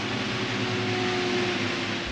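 Steady running noise inside a city bus: an even rush with a faint steady hum.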